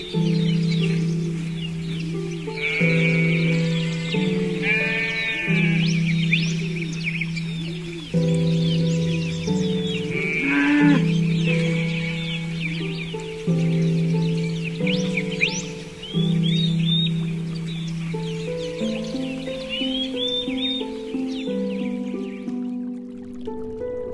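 Background music with held notes, over livestock calling three times, about three, five and ten seconds in. Small birds chirp throughout, and the animal and bird sounds stop shortly before the end.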